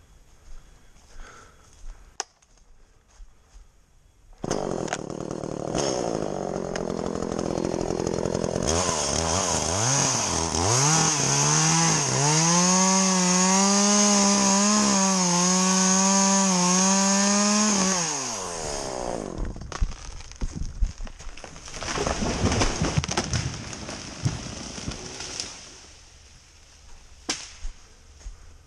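A chainsaw starts up about four seconds in and is then throttled up to full speed, running steady and loud as it cuts through a red oak trunk for several seconds before being let off. Irregular cracking and crashing follow as the felled oak goes over.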